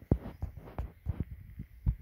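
Handling noise from the camera being moved and pressed against a handheld refractometer's eyepiece: a series of irregular dull low knocks and rubs, the loudest just after the start and near the end.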